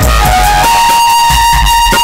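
Live violin playing a melody, settling into one long held note about two-thirds of a second in, over a steady drum accompaniment.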